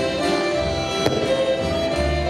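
A live folk band plays dance music: the fiddle leads over accordion, double bass and drum. About halfway through there is a single sharp crack.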